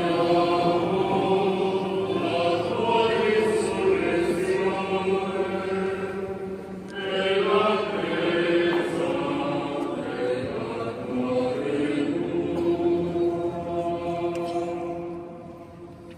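Voices singing the memorial acclamation of the Mass as a chant, in long held phrases, in a large stone church. The singing fades out near the end.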